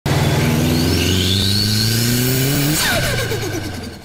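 A car engine accelerating, its pitch climbing steadily for nearly three seconds, then dropping away and fading out near the end.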